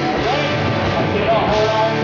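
A country rock band playing live on stage, with electric guitars and drums.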